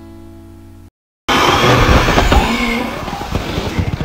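A held acoustic-guitar chord from background music cuts off under a second in. After a short silence, loud noisy party-room sound starts suddenly, with bits of voices and a heavy rumble of breath or air hitting the phone's microphone, just as birthday candles have been blown out.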